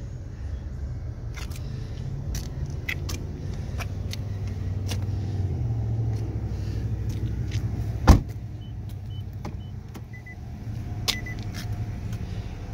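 A car door on a 2018 Nissan Altima shutting with one loud thud about eight seconds in, over a steady low rumble and light clicks. A few faint short beeps follow the thud.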